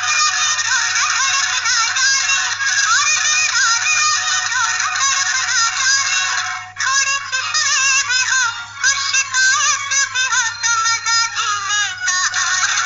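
Instrumental interlude of a Hindi film song: a high, wavering melody line plays over the backing music, with a brief break about seven seconds in.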